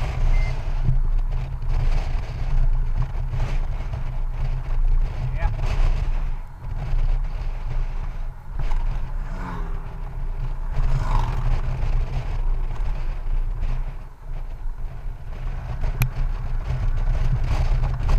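Wind buffeting the microphone of a Honda Goldwing GL1800 touring motorcycle at road speed, over the steady drone of its flat-six engine. The wind noise rises and falls, dipping briefly twice.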